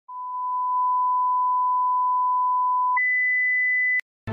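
Television test-pattern tone: a pure, steady beep at one pitch for about three seconds, then jumping an octave higher for the last second and cutting off suddenly.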